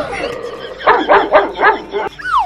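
Dog-like yelps: four or five short yips in quick succession, starting about a second in.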